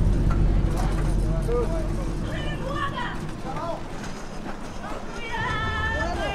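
Indistinct shouting voices over a low rumble of traffic, with a steadier pitched call or tone coming in near the end.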